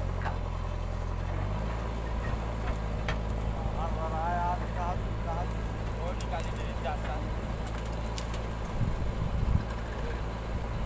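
Diesel engine of a JCB 3DX backhoe loader running under hydraulic load as the backhoe arm swings and dumps soil into a tractor trolley, its note changing about 1.5 s in. A few louder knocks near the end as soil drops from the bucket into the trolley.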